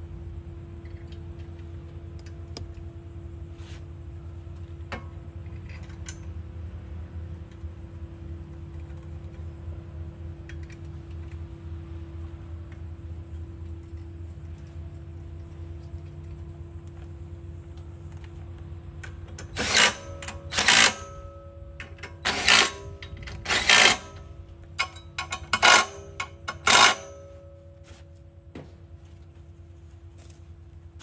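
A hand tool working fasteners in about eight short, sharp bursts over some seven seconds in the second half, as hardware is tightened back up on a tractor's battery compartment. A steady low hum sits underneath.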